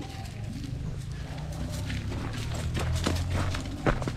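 Footsteps and a young goat's hooves on a dirt path as the goat is led on a rope, a run of short scuffs and taps through the second half over a steady low rumble.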